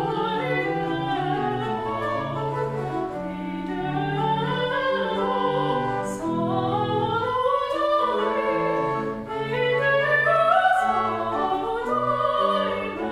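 A woman sings a classical aria in operatic style with vibrato, her line moving steadily up and down over a lower instrumental accompaniment, without a break.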